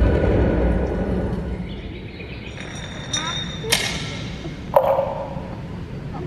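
Cartoon animatic soundtrack sound effects played over a hall's PA system: a low rumble that fades over the first two seconds, then high ringing tones and two sharp hits about a second apart.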